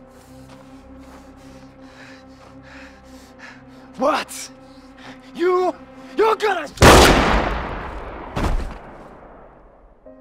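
A pistol gunshot: one very loud shot about seven seconds in with a long fading echo, then a second, shorter bang about a second and a half later.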